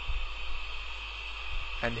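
Steady hiss with a low electrical hum, without any distinct event. A man's voice begins near the end.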